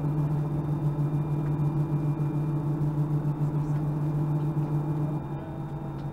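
Steady low hum inside an Airbus A320 cabin on the ground, one deep droning tone with a fainter higher one, easing slightly about five seconds in.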